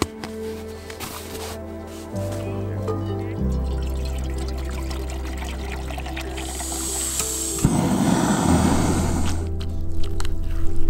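Background music with held low notes; about three-quarters of the way through, water is poured from a bottle into a metal cooking pot for a couple of seconds.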